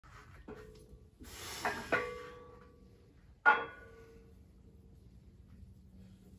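Iron weight plates on plate-loaded farmer's walk handles clinking and clanging as the handles are gripped and lifted off the ground: a light click, then two sharp clinks, then the loudest clang about three and a half seconds in. Each strike leaves a metallic ring that dies away, the last one over about a second.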